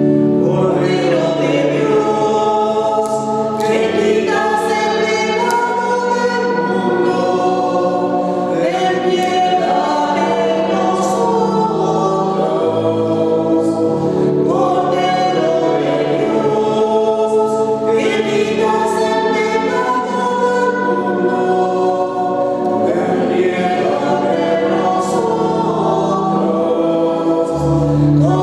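A choir singing a slow church hymn in phrases of a few seconds each, over sustained organ chords.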